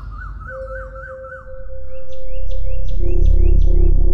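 Dramatic TV background score: a repeating chirping figure over a held tone, then a deep drone swells in about halfway under pulsing tones and high repeated figures.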